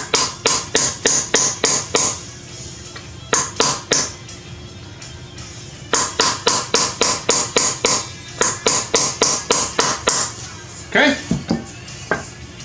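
Steel claw hammer tapping a roll pin punch in quick runs of light strikes, about five a second, with short pauses between runs, driving the bolt catch roll pin into an AR-15 lower receiver.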